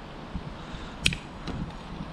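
Side cutters snipping through the tail of a nylon cable tie: one sharp snap about a second in, over faint handling rustle.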